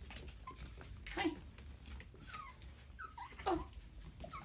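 Puppies whimpering in a handful of short, high calls, some sliding down in pitch, with the loudest about a second in and near the end.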